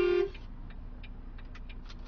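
A loud, steady truck horn blast cuts off about a third of a second in. It leaves the low running noise of the stopped truck with a string of faint clicks.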